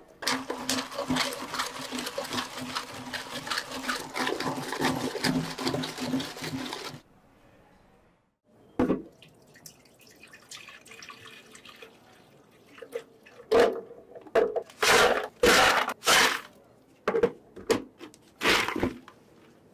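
Liquid pouring and fizzing over ice in a plastic cup, a dense crackle that cuts off abruptly after about seven seconds. Then milk pours into a clear plastic blender jar, and a series of loud clattering scoops of ice drop into the jar.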